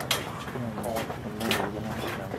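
Indistinct background voices of people talking, with no clear words.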